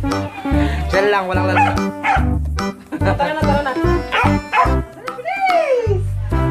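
Background music with a steady bass beat, and a dog's excited high whines over it, one long falling whine near the end.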